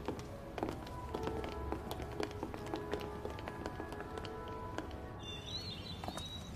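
Soft background score with long held notes, under the light taps of several people's footsteps on a hard polished floor. High chirps come in near the end.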